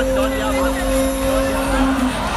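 A single amplified voice holding one long, steady sung note over the festival sound system, with the noise of a large outdoor crowd underneath.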